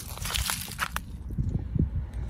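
Footsteps on dry soil: a few short crunching steps in the first second, over a low rumble.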